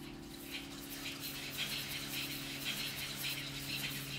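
A quiet passage of a cappella choral music: a low chord held steadily, with faint, softly pulsing hissing sounds high above it.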